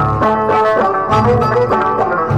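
Traditional Algerian folk music: a bending melodic line over regular low drum beats.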